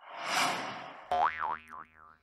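Cartoon sound effects: a rushing whoosh that swells and fades, then, about a second in, a springy boing whose pitch wobbles up and down a few times before it stops.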